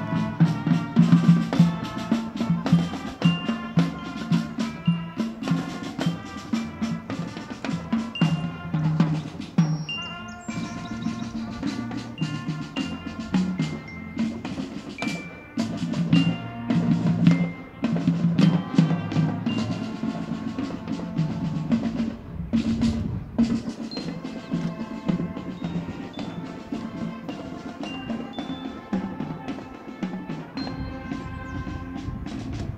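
High school marching band playing a tune, drums and brass under a bright, stepping melody.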